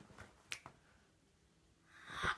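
Near silence with a few faint, short clicks in the first second, then quiet room tone.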